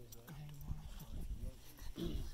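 Faint, indistinct talk; no words come through clearly.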